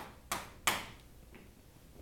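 Chalk knocking against a blackboard while writing: two sharp taps within the first second, the second the louder, then a fainter tap and quiet room noise.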